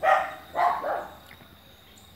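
A dog barking, a few short barks in the first second.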